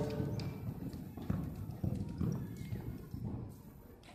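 A horse's hoofbeats on the soft sand footing of an indoor arena as it canters away: irregular dull thumps that grow fainter.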